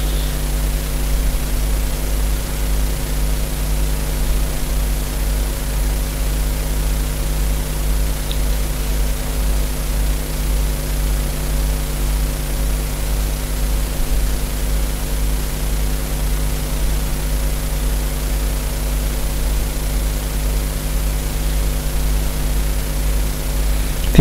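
Steady low hum with hiss, unchanging throughout: background noise of the recording with no other events.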